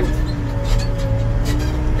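Tractor-loader-backhoe's diesel engine running steadily, heard from inside the cab as a low, even rumble.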